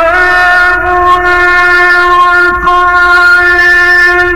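Male Quran reciter's voice in melodic mujawwad recitation, holding one long, steady note with a brief waver about two and a half seconds in.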